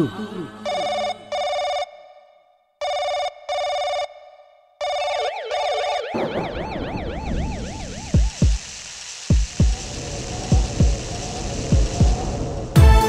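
Telephone ringing in a double-ring pattern three times, then a warbling siren-like tone, then a heartbeat sound effect: paired low thumps over a steady hiss.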